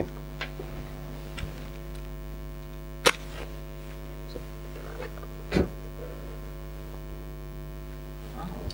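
Steady electrical mains hum, with a sharp click about three seconds in and a short burst of noise about two and a half seconds later.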